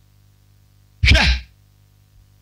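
A man gives one short syllable into a microphone about a second in, falling in pitch. Around it there is only a faint, steady low hum.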